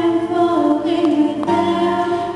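Two female voices singing a slow song in harmony, with piano accompaniment; the notes change to a new chord about one and a half seconds in.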